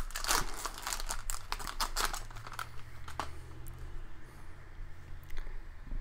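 Crinkling and tearing of a Topps 2020 Series 1 baseball card pack's wrapper as it is peeled open by hand. There are dense crackles for about the first three seconds, then only a few.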